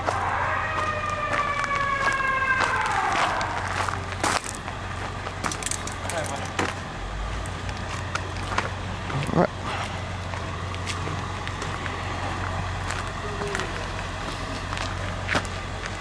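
Fire truck siren holding a steady pitch, then winding down and falling away about three seconds in. After that a steady low hum runs under scattered clicks and knocks.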